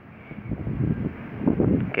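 Muffled low rustling and rubbing as hands turn a metal bracket onto a motorcycle's mirror stem, swelling about a second in and again near the end.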